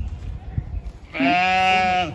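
A sheep bleating once, a single steady-pitched call of just under a second that starts about a second in.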